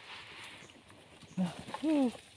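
Short wordless vocal sounds from a person, two brief sliding-pitch utterances in the second half, over soft rustling of undergrowth.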